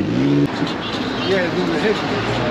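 A car engine running on the street under people's voices, with an abrupt change about half a second in.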